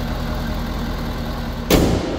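6.7-litre Power Stroke V8 turbo diesel idling steadily with the hood open, then the hood is slammed shut once near the end, after which the engine sounds more muffled.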